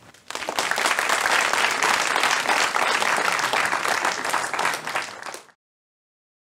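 Audience applauding. The clapping breaks out just after the start, holds steady, and is cut off abruptly near the end.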